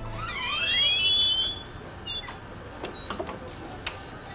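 A door creaking open: a high squeal from the hinges that rises in pitch and levels off after about a second and a half, followed by a few faint clicks.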